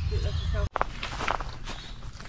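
Wind buffeting the microphone with a low rumble, which cuts off suddenly under a second in. It is followed by a few rustling, crunching footsteps through dry bush.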